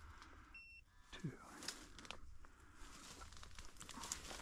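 Faint crunching and rustling of footsteps through dry leaves and brush, with one short, high electronic beep about half a second in.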